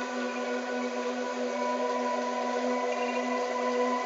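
Steady electronic brainwave-entrainment drone: a 396 Hz monaural beat and isochronic tone pulsing at 15 Hz, heard as several held tones layered together over a faint hiss.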